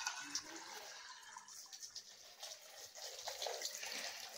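Faint trickle of water being poured into a small plastic water tank.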